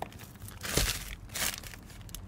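A thin plastic bag crinkling and rustling as it is handled and opened, in a few irregular bursts.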